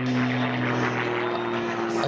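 Extra 300 aerobatic airplane's 300-horsepower Lycoming flat-six engine and propeller droning steadily as it flies a nose-down line, its pitch sagging slightly.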